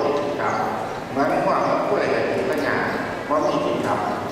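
A voice intoning a Buddhist chant in evenly spaced phrases about a second long, each held on fairly steady pitches with short breaks between.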